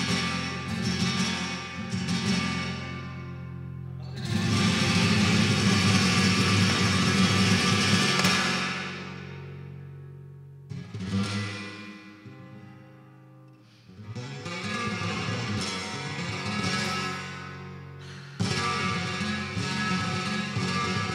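Solo flamenco guitar playing. About four seconds in, a loud, full passage rings out and slowly fades to a quiet stretch. The playing then builds again and comes back with a sudden loud chord near the end.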